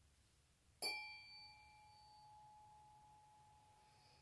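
Tuning forks struck once with a small mallet about a second in, then ringing on in a steady, pure tone; the higher overtones fade within about a second and a half while the main tone keeps sounding.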